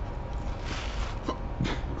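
A person's short, breathy body noise while eating crispy fries, a cough-like or sneeze-like expulsion of air about halfway through, which he follows with "Oh, excuse me."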